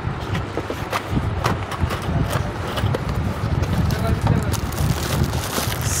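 Background voices and bustle of a busy shop, with a few sharp clicks and rustles from a plastic socket board and its cardboard box being handled.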